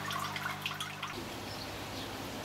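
Water dripping into a koi quarantine tank over a steady low electrical hum. About a second in, both stop abruptly and give way to faint outdoor background noise.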